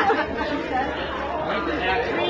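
Indistinct chatter of several people talking, with a low steady hum underneath that stops near the end.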